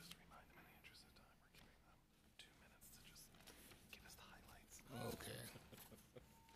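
Faint, low-voiced talk close to near silence, with a brief louder voice about five seconds in.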